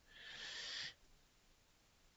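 A short, faint breath taken by the speaker between sentences, lasting under a second, then dead silence.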